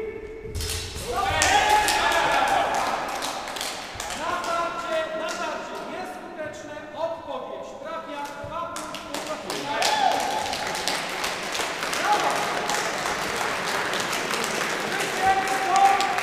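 Voices calling out and talking in a large, echoing sports hall, over scattered thuds and taps from a historical fencing bout on a foam mat.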